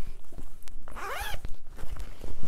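Zipper on a fabric project bag being pulled open: a quick run of small rasping ticks from the zip's teeth, with a short gliding whine about a second in.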